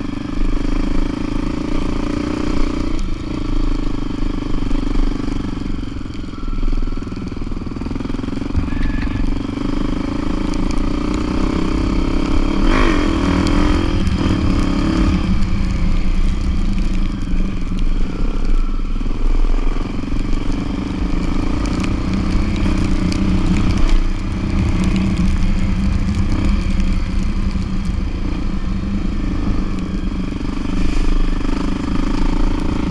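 Motorcycle engine running steadily while riding along a rough dirt road, its pitch briefly rising and falling a little under halfway through.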